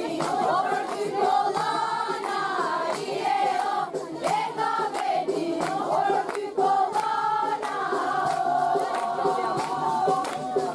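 A group of voices singing a song in chorus, with long wavering notes, and hand-clapping along.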